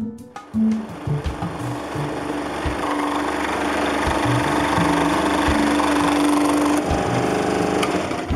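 Scroll saw cutting through the wall of a small wooden box: a steady sawing noise that starts about half a second in and stops near the end.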